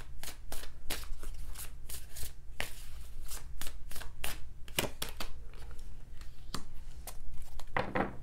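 A deck of tarot cards being shuffled by hand: a steady run of irregular card clicks, several a second.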